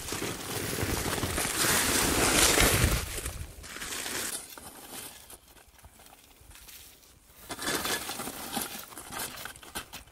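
Digging out a buried Dutch oven: foil being pulled back and a shovel scraping and digging through dry clay dirt and ashes. The noise is loudest in the first three seconds and comes back for a couple of seconds near the end.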